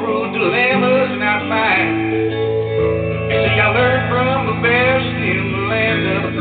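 Stratocaster-style electric guitar playing sustained chords while a man sings over it.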